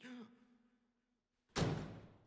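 A person's sharp breath about one and a half seconds in, short and loud. Before it there is a faint, low, steady hum.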